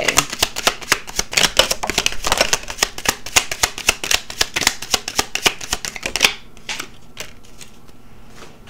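A tarot deck being shuffled by hand: a rapid run of card flicks and slaps that stops suddenly about six seconds in, followed by a few faint clicks.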